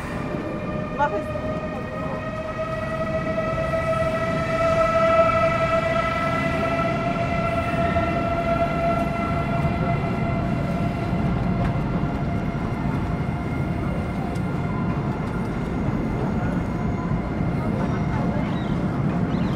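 A train crossing a steel truss railway bridge close by, with a low rumble under a steady whine of several tones. The whine rises slightly in pitch and the sound grows louder over the first five seconds, then holds.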